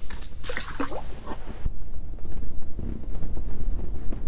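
A bluegill let go by hand into an ice-fishing hole, with splashing and dripping water in the first second and a half, then only a steady low rumble.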